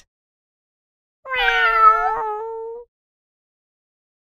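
A single cat meow, about a second and a half long, starting just over a second in.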